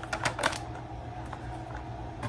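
Light clicks and taps of a pair of children's sneakers being handled, with a quick run of them in the first half second and then only an occasional faint tick.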